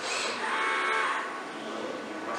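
Mitsubishi industrial robot arm's servo motors whining as the arm swings across the cell, a steady several-toned hum that is loudest around the middle and fades toward the end.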